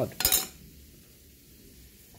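A brief hard-plastic clatter about a quarter second in, as a clear acrylic card holder is set down on a wooden table and the card is taken out of it.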